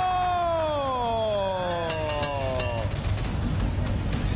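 A man's long drawn-out exclamation, one held vowel that slowly falls in pitch and lasts about three seconds, in reaction to the red team's block tower collapsing.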